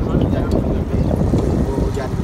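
A voice reciting Buddhist prayers in Vietnamese, half-buried under a heavy, uneven low rumble of wind on the microphone.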